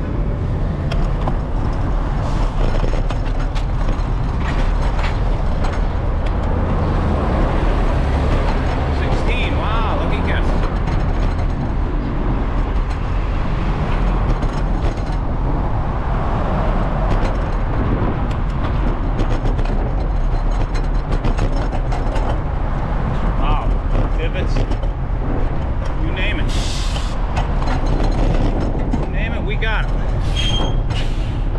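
Steady wind noise on a moving bicycle's camera microphone, mixed with the sound of city street traffic. A brief hiss comes near the end.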